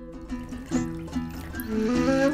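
A traditional Turkish makam melody played on a plucked string instrument, its notes stepping up and down. It is quiet at first and grows louder near the end.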